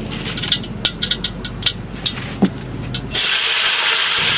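A run of sharp clicks and knocks, then about three seconds in a loud, steady sizzle starts suddenly: vegetables frying in hot oil in a wok.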